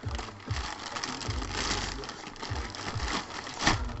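Plastic bag rustling and crinkling as it is handled and pulled off a boxed product, with several sharper crackles.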